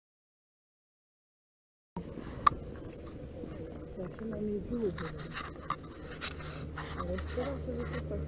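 Silent for about two seconds, then faint, indistinct voices over scattered clicks and knocks of a chairlift ride, with a low steady hum building in the second half.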